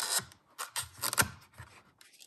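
Plastic packaging scraping and clicking as a hard phone case is worked out of its box tray. A short burst of scraping comes first, then a run of sharp clicks about a second in.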